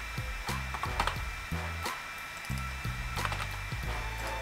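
Computer keyboard clicking in scattered keystrokes as code is typed, over a steady low hum whose pitch shifts in steps.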